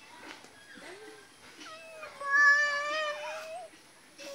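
A long, high-pitched call, a single voice held steady for about two seconds from about halfway in, wavering as it ends; it is the loudest sound here.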